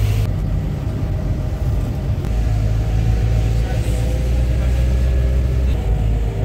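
Car engine and road noise heard from inside the moving vehicle: a steady low rumble.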